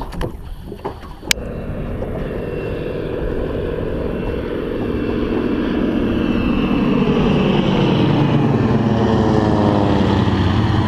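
A sharp click about a second in, then the engine drone of three aircraft flying over in formation, building steadily louder as they approach and starting to drop in pitch near the end as they pass overhead.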